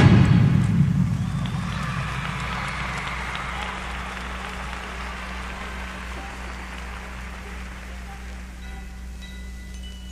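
A marching band's loud chord cuts off right at the start, followed by stadium crowd applause and cheering that fades over several seconds. Near the end, soft mallet percussion notes begin, over a steady low hum.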